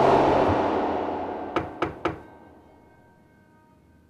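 A soft whooshing swell of noise as the piano score ends, marking a scene transition, fading away over about two seconds. Three sharp clicks come in quick succession near the end of the fade.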